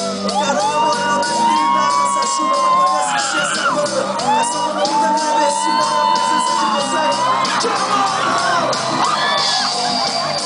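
Live reggae band music with sung vocals: long held notes over the drums and guitar of the band.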